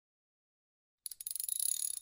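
A short, high-pitched jingling, bell-like transition sound effect, starting about a second in and lasting about a second.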